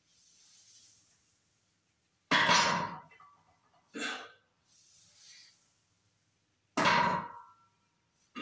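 A loaded 135 lb barbell set down on the floor twice between deadlift reps, about four and a half seconds apart. Each touchdown is a loud thud with a brief metallic ring from the bar and plates. Heavy breathing comes between the reps.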